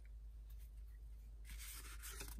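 Paper cards rustling and sliding against one another as a small stack is shuffled and fanned in the hands, starting about a second and a half in after a quiet stretch.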